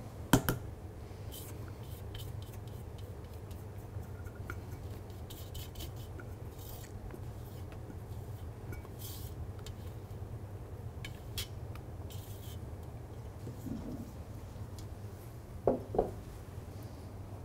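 Rubber spatula folding whipped cream into a mousse-like mixture in a stainless steel bowl, with faint intermittent scraping against the metal. There are a couple of sharp knocks just after the start and one shortly before the end.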